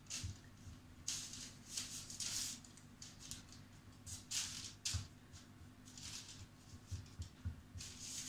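Faint, irregular soft swishes and rubs of fingers pressing tart pastry dough down into a tart mould, over a low steady hum.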